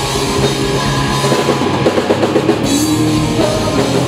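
Live rock band playing: electric guitars, bass guitar and a drum kit, with a busy run of drum hits in the middle.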